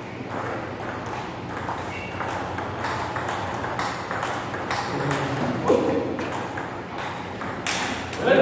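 Table tennis rally: the ball clicking back and forth off the bats and the table in a steady run of hits, with a sharper hit near the end. Spectators talk quietly in the background.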